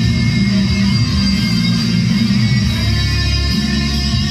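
Electric guitar played through an amplifier in a heavy rock song, with steady low notes sustained underneath.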